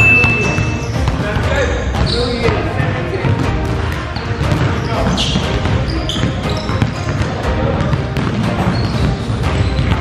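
Basketballs being dribbled and bouncing on a hardwood gym floor, with a brief high squeak at the start. Voices and music are in the background.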